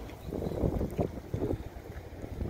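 Wind buffeting the phone's microphone outdoors: an uneven low rumble that swells in gusts.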